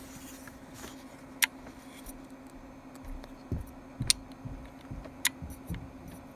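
Small metal parts of an opened hard drive being handled: three sharp metallic clicks spread through, with a few soft low knocks, over a steady low hum.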